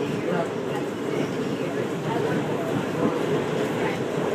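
Steady running rumble of a passenger train heard from inside the carriage, with faint voices in the background.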